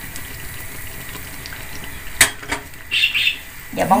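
Hot oil sizzling steadily in a frying pan as patongko (Thai fried dough sticks) fry, with a single sharp knock about two seconds in.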